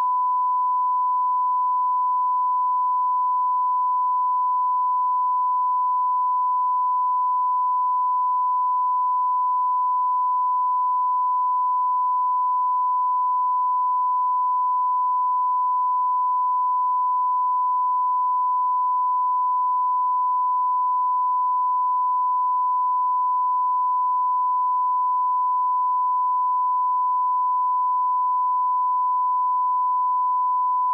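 Steady 1 kHz line-up test tone, a single unbroken pure tone at constant level, sent with colour bars as the audio reference signal before a broadcast starts.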